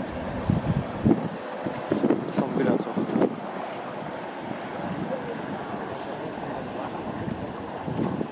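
Wind buffeting the microphone, gusting harder in the first three seconds and then settling into a steady rush.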